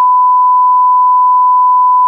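Television test-pattern tone of the kind played over colour bars: one long, steady beep at a single pitch.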